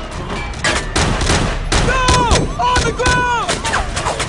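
Rapid gunfire with many shots in close succession, bullets striking a man's metal body armour. From about two seconds in, several ringing tones fall in pitch among the shots.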